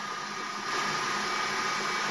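Stand mixer running steadily, its flat beater turning through a soft egg, sugar and fresh-cheese batter: an even motor whir with a thin, steady high whine.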